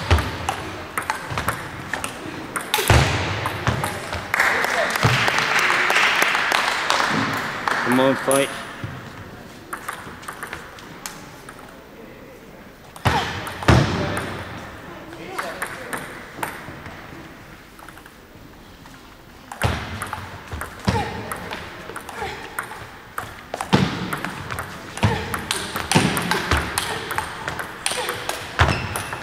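Table tennis rallies: the ball clicking off the bats and the table in quick alternating strokes, in a large sports hall. One rally comes near the start and a long, fast one fills the last several seconds; between them come a few seconds of noisier hall sound and a quieter pause with only a single loud click.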